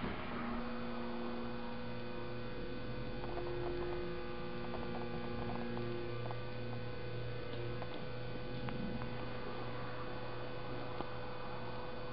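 Steady electrical hum, with a few steady low tones joining about half a second in and two of them dropping away after about six or seven seconds.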